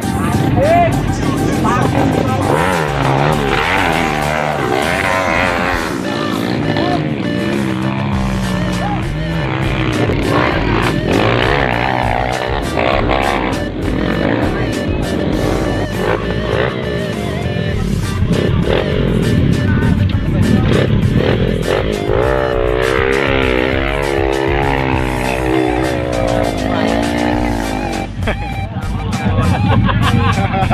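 Off-road trail motorcycle engines revving, mixed with crowd voices and music.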